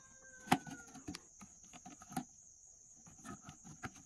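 Hands handling a large plastic water jug: scattered crinkles, taps and knocks of the plastic, the sharpest about half a second in, over a steady high-pitched insect drone.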